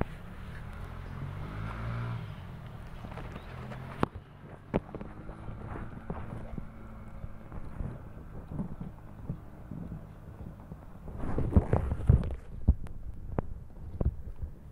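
Close-up handling noise of a hand working among shallot plants in a pot: rustling of leaves and fingers in the soil, with scattered clicks and knocks. A louder burst of rustling and knocks comes about eleven to twelve seconds in.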